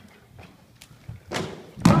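Heavy thuds as a horse jumps in a sand arena and knocks down a showjump pole: two loud impacts, the louder just before the end. The knocked rail means a fault at the fence.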